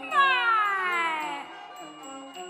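One long note sliding smoothly down in pitch for about a second and a half in Huayin laoqiang folk opera, a stylized cry-like glide that fades near the end, with soft sustained accompaniment beneath.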